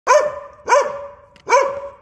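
Belgian Malinois barking three times, loud and evenly spaced, each bark rising then dropping in pitch, with a ringing echo after each bark from the steel building.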